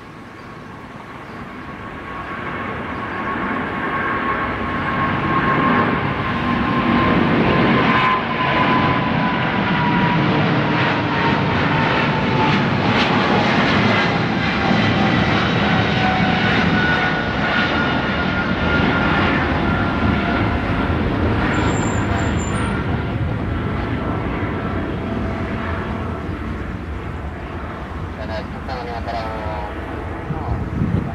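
Twin-engine jet airliner's engines at takeoff power as it climbs out and passes. The noise builds over the first several seconds, holds, then slowly fades, with a high fan whine gliding down in pitch as it goes by.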